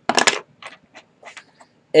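Small hard plastic toy gun accessories clicking and clattering as they are handled: a quick cluster of sharp clicks just after the start, then a few lighter ticks.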